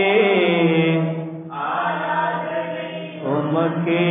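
Voices singing a Tamil Christian worship song. A long held note with wavering pitch eases off about a second and a half in, and the next line starts near the end.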